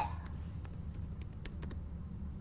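Typing on a computer keyboard: a run of short key clicks, most of them in the second half, over a steady low hum.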